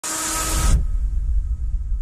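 Logo intro sound effect: a loud burst of bright hiss that cuts off sharply under a second in, followed by a deep, steady low rumble.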